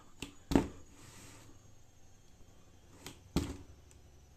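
Kreator rubber dead-blow hammer striking a cardboard box: two dull thuds about three seconds apart, each just after a lighter tap.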